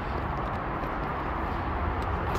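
Steady outdoor background noise with a low rumble throughout and no distinct events.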